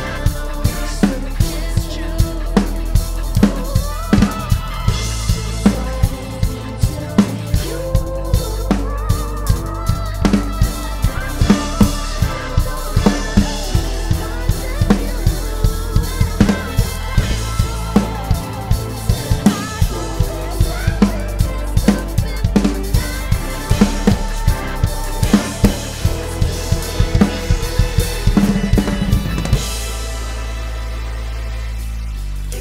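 Acoustic drum kit played in a steady groove of kick and snare, with a quick run of hits near the end, over a pop song's recorded backing track.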